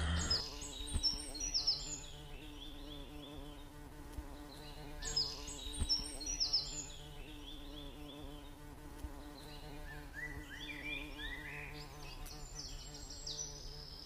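A steady low buzzing hum, like an insect's drone, runs under short runs of high, falling bird chirps that come back every four to five seconds.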